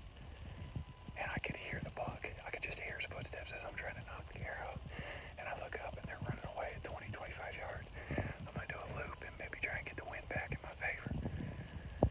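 A man whispering steadily in a low voice, too quietly for the words to come through.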